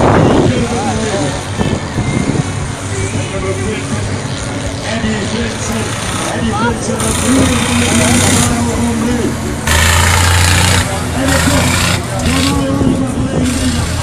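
Race vehicle engine on a dirt track, rising loudly twice about halfway through, under steady voices from the crowd or a public address.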